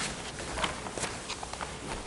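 Papers being leafed through and handled on a table: a few soft rustles and light taps over quiet room tone.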